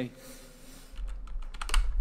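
A quick run of computer keyboard clicks late on, over a low rumble on the microphone that starts about halfway through.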